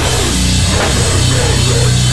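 Live heavy rock band playing loud and steady: electric guitar and bass over a drum kit with cymbals.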